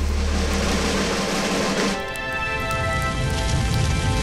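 Sound-design score for an animation: a dense rushing noise over a low drone, giving way about two seconds in to a sustained, uplifting chord of held tones with the noise still underneath.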